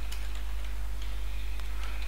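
A few faint, scattered computer keyboard keystrokes, spaced irregularly, over a steady low electrical hum.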